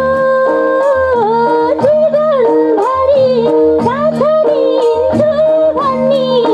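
A woman singing a Nepali folk dohori song live into a microphone, her melody sliding and ornamented, over sustained harmonium notes and a steady low drum beat.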